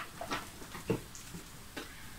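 Faint handling sounds: a few soft taps and rustles as a small packaged item is worked out of an advent calendar compartment.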